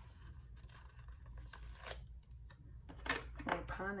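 Paper sticker sheets in a sticker book being handled, with small soft rustles and one sharp crisp rustle about two seconds in. Speech starts near the end.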